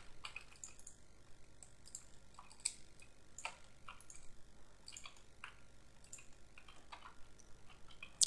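Faint, irregular clicks of a computer mouse being used, two or three a second, over low steady room hum.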